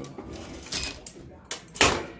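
Clamshell heat press being pulled shut, ending in a loud clunk near the end as the upper platen clamps down on the shirt and transfer paper. A shorter rustle comes a little under a second in.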